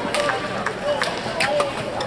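Badminton rally: rackets striking the shuttlecock in several sharp hits, a jump smash and then a low lunging return.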